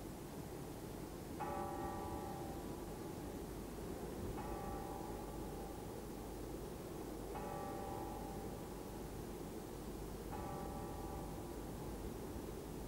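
A single church bell tolling slowly: four strokes about three seconds apart, each ringing on briefly, over a steady hiss.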